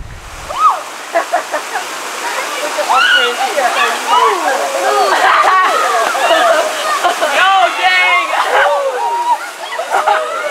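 Water rushing down a natural rock waterslide into a pool, under many overlapping voices of people shouting and laughing. The voices are densest in the middle and latter part.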